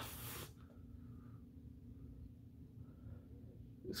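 Near silence: faint room tone with a low hum, after a brief hiss in the first half second.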